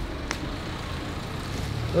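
Steady low rumble of road traffic in the street, with one faint click about a third of a second in.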